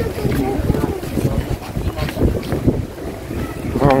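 Wind buffeting a handheld camera's microphone as a low, uneven rumble, with scattered knocks from the camera being handled. Faint voices can be heard behind it.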